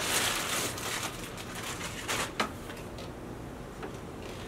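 Plastic packaging bag rustling and crinkling as it is pulled off an electric unicycle. The sound is busiest at first, with a few sharper crinkles about two seconds in.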